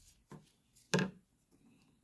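A light knock of trading cards being set down or tapped on a wooden tabletop, once about a second in, with a fainter tap just before; otherwise quiet handling.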